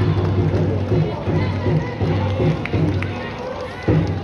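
Stadium cheering section chanting in time to a steady, quick drum beat, with music over it. A sharp knock sounds near the end.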